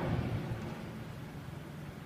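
Low, steady rumble from a documentary film's soundtrack under its title card, played through the lecture hall's loudspeakers; it is a little louder at the very start and then holds steady.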